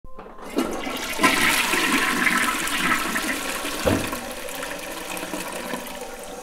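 Toilet flushing: the water rushes in about half a second in, with a brief surge about four seconds in, then slowly dies down.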